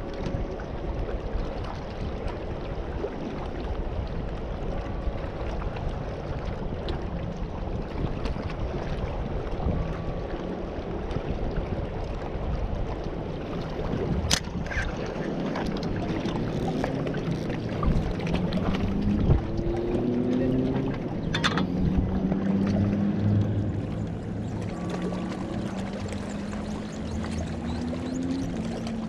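Wind on the microphone and water at the rocks as a steady low rush. Two sharp clicks come about 14 and 21 seconds in, the first as the spinning reel's spool is handled. In the second half a low wavering hum comes and goes.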